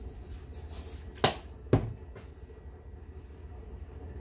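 Two sharp knocks about half a second apart, then a fainter one, as a glass seasoning jar is tapped and shaken over a plate of flour, against a low steady hum.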